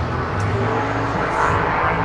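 Steady low engine hum under outdoor background noise, swelling louder in the second half.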